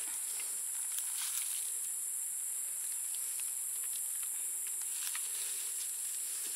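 Steady high-pitched chorus of insects, with a few faint scrapes and rustles of hands scooping soil from a bucket and pressing it around a pineapple sucker in leaf litter.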